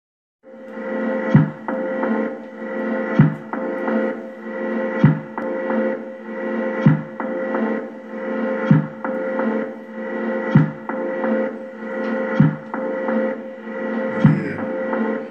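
Electronic tech-house groove from Korg Volca Beats and Volca Sample through a mixer: a steady sustained drone under a looping pattern, with a deep hit repeating about every two seconds and lighter clicks in between. It starts about half a second in.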